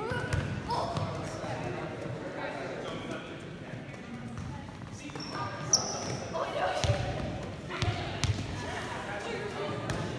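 Volleyballs being set by hand and dropping onto a hardwood gym floor: scattered slaps and thumps, the loudest in the second half, echoing in the gym, with a brief high squeak near the middle.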